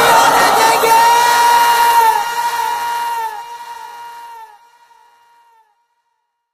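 The final held note of a sung naat, a voice sustained over a background of voices, then trailing off in repeated echoes that fall in pitch and fade out about two thirds of the way through.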